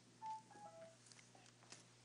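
A short electronic chime of three clean tones stepping down in pitch, about a quarter second in, over near-silent room tone with a few faint clicks.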